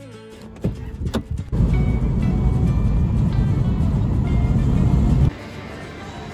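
Background guitar music, with two knocks about a second in, then a loud low rumble of a car on the move for about four seconds that cuts off suddenly.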